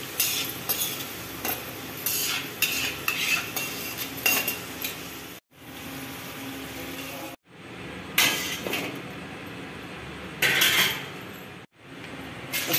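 Fried potato pieces sizzling in hot oil in a metal kadhai, with a wire spider strainer scraping and clinking against the pan as the pieces are lifted out. The sound cuts out abruptly a few times.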